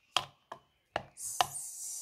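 A metal spoon knocking against the side of a plastic cup while stirring wet chopped onion: four sharp clicks about half a second apart, then a brief high hiss near the end.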